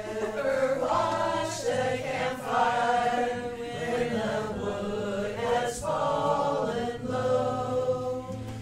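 A group of voices singing a slow campfire song together in unison, in long held phrases with short breaks between them.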